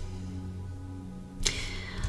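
Quiet background music with steady low tones. About one and a half seconds in comes a single brief swish of a hand with long acrylic nails sliding over tarot cards.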